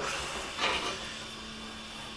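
Faint steady whirr of an engine stand's hand-cranked rotating gear as it rolls a bare engine block over.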